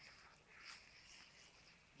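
Near silence: faint outdoor background hiss, with a slight soft swell about two-thirds of a second in.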